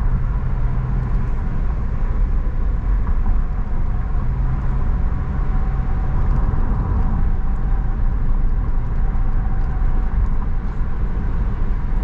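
Car interior road noise while driving on a concrete toll road: a steady rumble of engine and tyres, with a low drone that swells and fades now and then.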